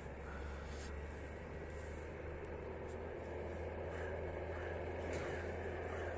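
Steady low background rumble of outdoor ambience, slowly growing a little louder, with a few faint ticks.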